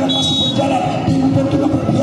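A short referee's whistle blast near the start, a high steady tone of about half a second, signalling the serve in a volleyball match. It sounds over continuous background music.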